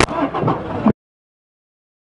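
Under a second of crowd bustle with voices and a sharp click at the start, then the sound cuts off abruptly to dead silence.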